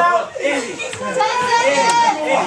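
Several young men's voices shouting and cheering over one another, with one voice holding a long drawn-out yell through the second half.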